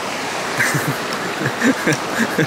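Steady rush of surf breaking and washing up the beach, with a few indistinct spoken sounds from about half a second in.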